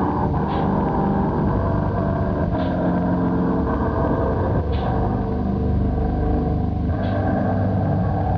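A steady, dense low drone soundtrack: a rumble layered with held tones, with a faint hissing accent about every two seconds.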